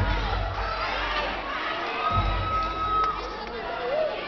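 Audience cheering and shouting over music, with bass swells at the start and again about two seconds in. One voice holds a long high cry for about a second.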